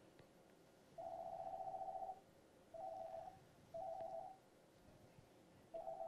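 A telephone ringing with a buzzing electronic tone: one long ring about a second in, then three short ones about a second apart.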